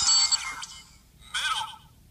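Melon Lockseed toy playing its electronic sound effect through its small speaker: a bright electronic burst that ends about half a second in, then a second short burst of warbling tones at about 1.3 seconds.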